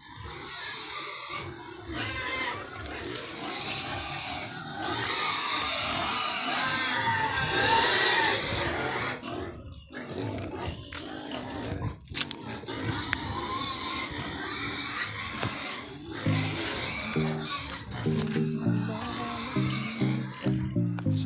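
Pigs squealing and grunting, noisy, loudest in the middle stretch, with music playing underneath.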